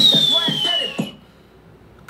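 Hip hop track with rapped vocals and a high whistle-like tone sliding down in pitch, cut off suddenly about a second in when the video is paused, leaving only faint hiss.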